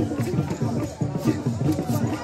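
Music with a group of voices singing and chanting together in a steady, repeating rhythm, with the murmur of a crowd around it.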